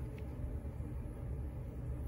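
Low, steady background hum of the work space, with no distinct event.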